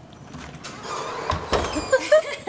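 Apartment front door being unlocked and pushed open: a rising rush of noise with a couple of clicks and dull thuds about a second and a half in, and a woman's voice starting to laugh at the very end.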